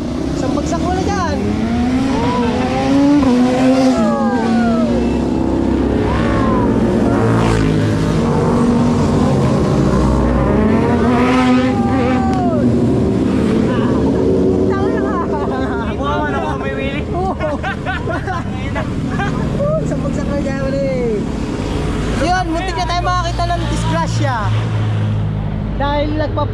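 A string of motorcycles passing at speed one after another, their engines revving, each one's pitch rising and falling as it goes by.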